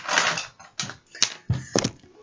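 Handling noise: a short rustle, then a few sharp clicks and knocks from about a second in, as things are handled and set down near the microphone.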